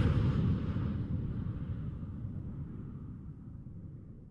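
Low rumbling tail of a closing logo sound effect, fading away steadily.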